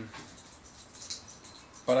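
A pause in a man's speech with only faint background noise, then he starts speaking again near the end.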